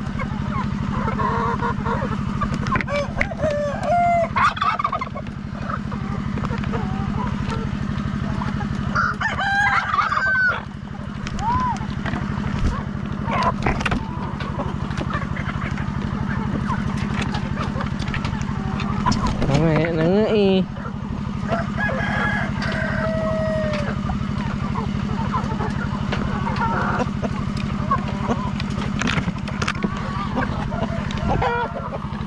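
Chickens clucking and roosters crowing in a free-range flock, with two long crows standing out about nine and nineteen seconds in. Under them runs a steady low motor hum.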